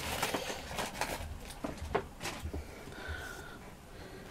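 Packaging rustling and crinkling as it is opened by hand, in scattered irregular crackles.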